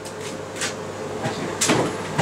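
Handling noises while someone looks for a tool: a few light knocks, then a louder sharp clack about a second and a half in.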